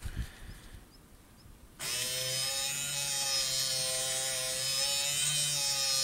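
A 12-volt geared DC motor starts about two seconds in and runs steadily with a whine, turning a drive roller and pinch roller that feed antenna wire through the guides.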